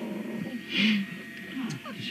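Young puppies, not yet three weeks old, whimpering and squeaking in short calls, the loudest a little under a second in.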